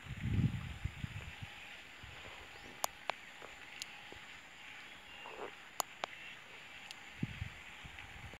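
Quiet rural outdoor ambience with faint birdsong. A brief low rumble of wind or handling on the microphone comes at the start, and a few sharp clicks fall through the middle.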